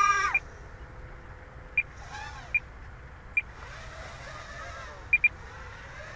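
Small racing quadcopter's brushless motors heard faintly at a distance as a thin whine whose pitch rises and falls briefly about two seconds in. Several short, sharp beeps at one high pitch come at irregular moments, two of them close together near the end.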